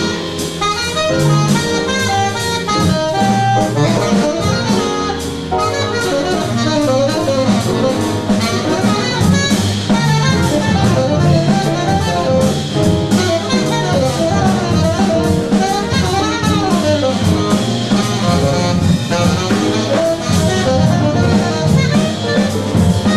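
Tenor saxophone playing a busy jazz line of quickly changing notes, with a drum kit's cymbals and drums and low notes underneath.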